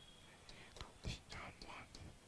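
Chalk writing on a blackboard: a few sharp taps and short scratchy strokes as a figure is drawn, faint.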